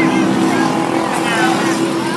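A steady mechanical drone, like a motor running, with voices calling out across a futsal court.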